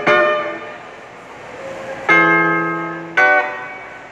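Acoustic guitar: a strummed chord rings out and fades, then after a pause two more chords are struck about a second apart, each left to ring.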